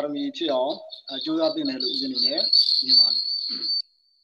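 A man speaking over a video call, with a thin, high whistling tone behind his voice from about a second in that rises slightly in pitch and is strongest near the end.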